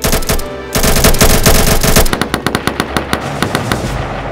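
Rapid bursts of automatic gunfire. The shots come densely for the first two seconds, with a brief break, then thin out to separate shots in quick succession.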